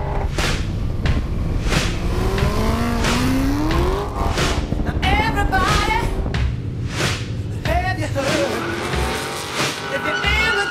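Car engines revving hard and tyres squealing as cars drift and do burnouts, in quick cuts. One engine note climbs steadily in pitch a couple of seconds in, with a few sharp cracks along the way.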